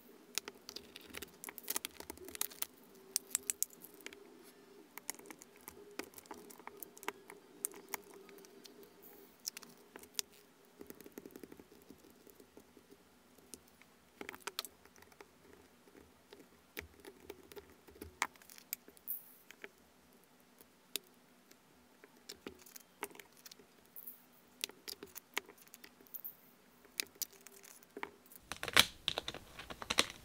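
Tiny resin diamond-painting drills being poured and shaken into small plastic storage compartments, giving quiet irregular pattering and clicking. There are occasional sharper clicks of plastic containers and lids being handled.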